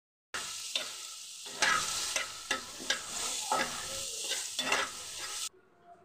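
Onion pieces and green chillies sizzling in hot oil in a pan while being stirred, with scrapes against the pan about every half second to a second. It starts just after a brief gap and cuts off suddenly near the end.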